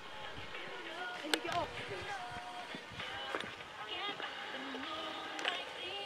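Faint voices in the background, with a couple of light clicks.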